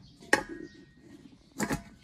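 An enamel basin set upside down over a steel plate on a wooden board, making two knocks: one about a third of a second in with a brief metallic ring, and one near the end.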